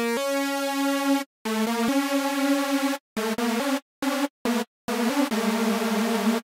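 u-he Hive software synthesizer playing a phrase of separate notes of different pitches and lengths, broken by short gaps. The sound is a sawtooth oscillator stacked as 16 unison voices. Its unison detune is turned up from near zero to high, spreading the voices further apart around the pitch, so the tone grows thicker and more smeared as it goes.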